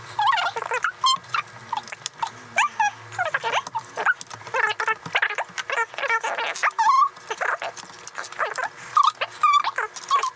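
Sped-up recording of two people talking: their voices come out as fast, high, squeaky chipmunk-like chatter, with quick clicks of LEGO bricks being handled.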